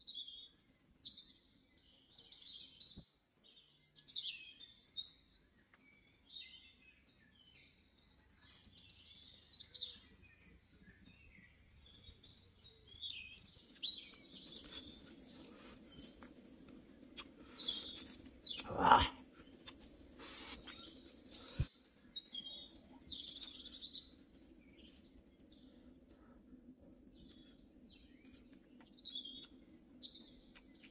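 Wild birds chirping and calling in short, repeated phrases. About halfway through a low steady hum comes in underneath, and a single sharp crack about two-thirds through is the loudest sound.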